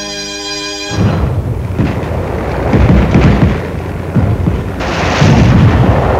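A held music chord ends abruptly about a second in, giving way to loud battle noise from a mock combat exercise: repeated heavy booms of gunfire and explosions over a continuous low rumble.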